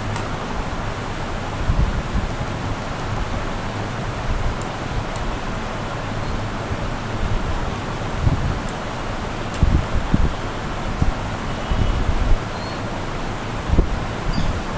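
Steady, fairly loud hiss of background noise, with several dull low thumps, most of them in the second half.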